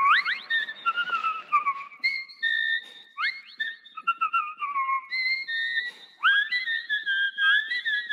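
Clear high whistled notes, held for a moment each and joined by quick upward slides, in a steady run with brief breaks.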